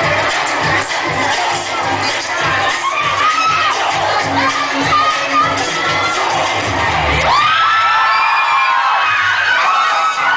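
An audience screaming and cheering over loud dance music with a steady beat. The screaming grows denser and louder about seven seconds in.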